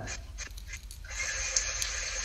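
Line noise on a recorded phone call between two speakers: a low steady hum, then about a second in an even hiss comes in and holds.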